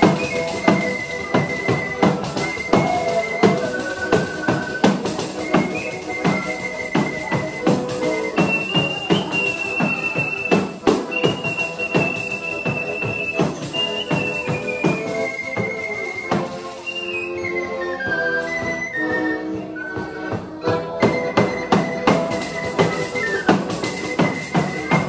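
Sicilian folk music: a tamburello (large tambourine) beats a steady pulse under a piano accordion and a high, held melody played at the mouth. Midway the drumming drops out while the melody steps down, then the beat comes back.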